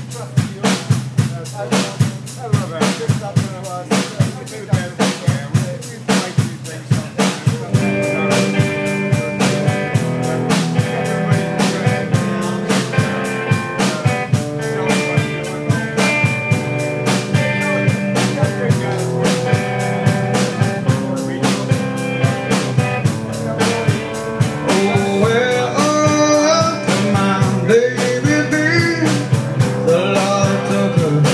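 Live rock band playing an instrumental intro: drum kit hits lead for about the first eight seconds, then electric guitar and bass guitar join with sustained chords over a steady beat, with sliding notes near the end.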